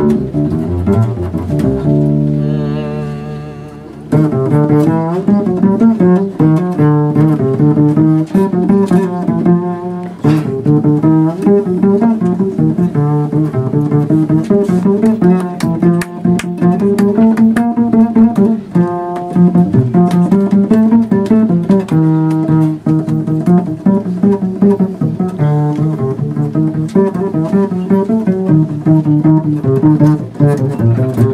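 Upright double bass played solo. About two seconds in, a held note wavers in pitch and fades; then comes a long run of fast notes.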